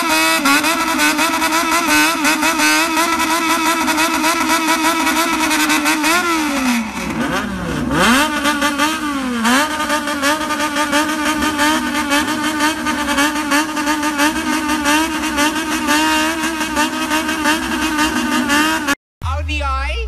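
Bosozoku-style customised motorcycles, a Honda CBX among them, with their engines held at high revs under rapid throttle blipping. The revs fall sharply and climb back twice, about seven and nine and a half seconds in. The sound cuts off abruptly near the end.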